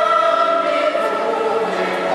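Choral singing, several voices holding long, steady notes together.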